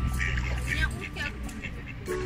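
Mallard ducks quacking in short calls over background music, the calls thinning out after the first second.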